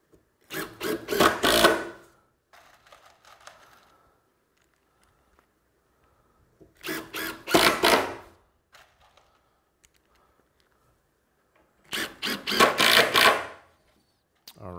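Cordless impact driver driving three screws in turn, each run lasting about one and a half seconds and getting louder toward its end as the screw seats a little below flush in the sled's runners.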